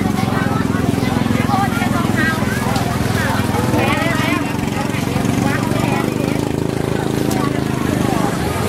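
People talking close by at a market stall, over a steady low engine hum.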